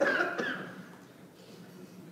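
A person's short vocal sound, cough-like, right at the start, fading within about half a second into quiet room tone.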